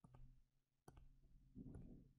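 Faint clicks from selecting on-screen drawing tools, one sharper click about a second in, over a faint low hum.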